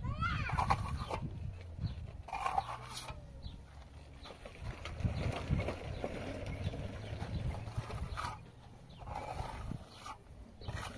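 Farm animals calling in short cries at the start, about two and a half seconds in, and near the end, over the scrape of a steel trowel spreading plaster on a wall.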